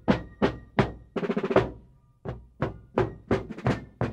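Rope-tensioned field drums of a fife and drum corps playing a marching cadence. Short rolls come in the first half, then, after a brief gap, single strokes at about three a second.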